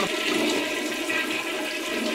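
Toilet flush sound effect: a steady rush of swirling water that slowly fades.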